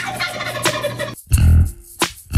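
A turkey gobbling for about a second, a dense warbling call, after which the bass-and-guitar backing music comes back in.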